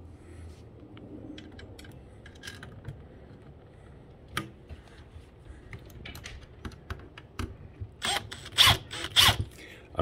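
Light scattered clicks and taps of hand work with screws and a cordless drill at a metal window frame, with no drill running. Near the end come a few louder short rustles and knocks.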